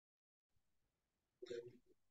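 Near silence, broken once about a second and a half in by a brief, faint sound from a person's voice.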